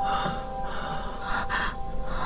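A person's heavy, breathy gasps, twice, over a steady held musical tone.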